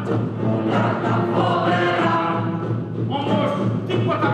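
A stage ensemble singing in chorus with instrumental accompaniment, the bass keeping a steady pulse throughout.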